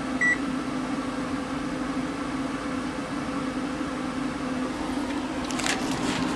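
A single short electronic beep from a microwave oven's control panel as it is stopped, then the steady hum of the RV's furnace fan running.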